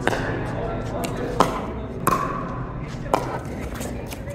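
Pickleball rally: the plastic ball popping off paddles and the court, about five sharp pops a second or so apart, the loudest about one and a half seconds in.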